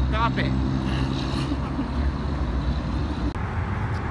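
Open-air parking-lot ambience: a steady low rumble, with a brief voice just after the start.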